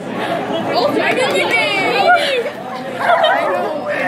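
Excited chatter from a small group, voices overlapping, with laughter and a high, wavering voice about a second and a half in.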